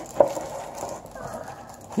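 Quiet handling noise from unpacking a boxed dipping-pen set: one sharp click just after the start, then faint low-level sound of the pen and its plastic wrapping being handled.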